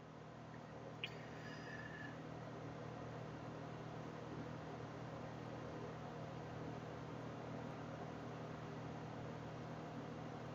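Faint steady hiss of room tone and microphone noise with a low hum, and one small click about a second in.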